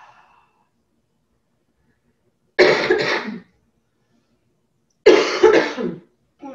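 A woman coughing: a short bout of two coughs about two and a half seconds in, and another bout of two coughs near the end.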